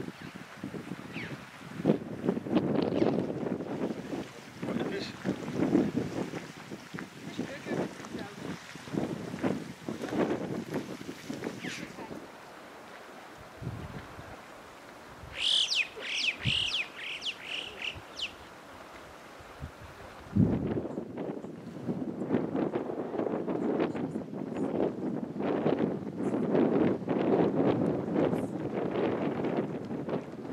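Wind buffeting the microphone in gusts, easing off about halfway, when a bird gives a short run of high chirping notes before the wind noise returns.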